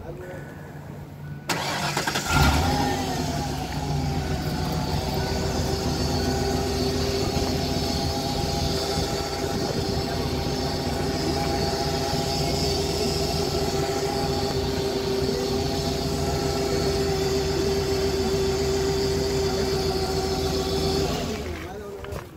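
A used Ford Explorer's engine is cranked by the starter about a second and a half in and catches right away with a brief loud rise, then settles into a steady idle. It starts readily.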